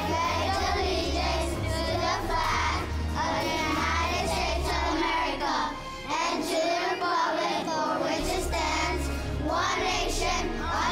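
A class of young children reciting the Pledge of Allegiance together in unison, over a background music bed whose bass drops out for a couple of seconds past the middle.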